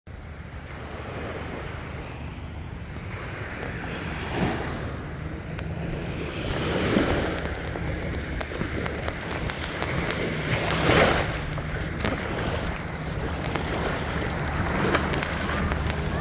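Small sea waves washing onto a sandy shore, swelling in a louder wash every few seconds, over a steady low rumble.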